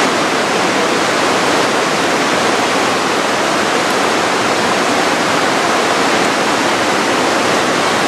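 Loud, steady rush of fast-flowing river water: the Aare running through its gorge.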